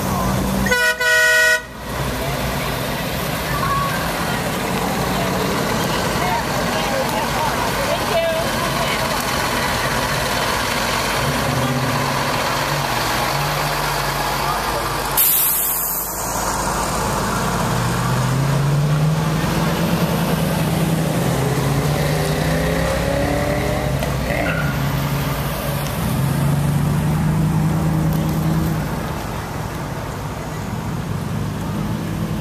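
Parade cars and trucks driving slowly past, engines running, with engine notes rising and falling as vehicles pull through. A vehicle horn sounds once, about a second in, and a brief burst of hiss comes about halfway through.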